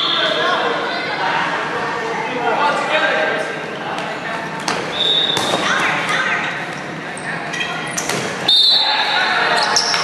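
Dodgeball play in a large, echoing sports hall: players' voices calling through the rally, with a few sharp smacks of thrown dodgeballs and several short high squeaks.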